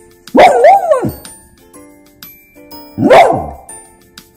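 Samoyed barking twice. The first bark is drawn out with a wavering pitch, the second is shorter and falls away. Light background music plays throughout.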